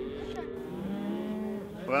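Angus and black baldie cattle lowing, one long low moo fading out as another begins about half a second in and is held.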